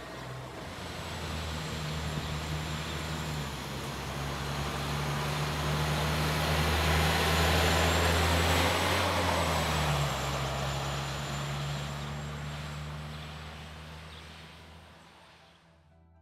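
Transit bus driving past: its engine drone and road noise build to a peak about eight seconds in, then fade away as it moves off.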